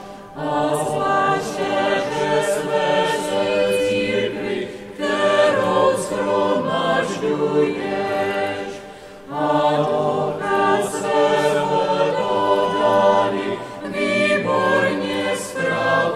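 Choir singing a hymn in sustained, slow phrases, with brief dips between phrases about every four to five seconds.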